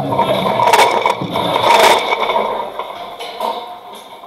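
Guitar music fading out within the first second or so, with two loud noisy bursts about one and two seconds in before the sound drops away.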